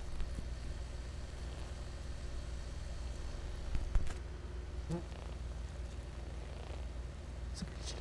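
Colony of German yellowjackets inside a nest hidden behind basement insulation, heard as a faint crackling and rustling over a low steady hum, with a couple of sharper clicks about halfway through.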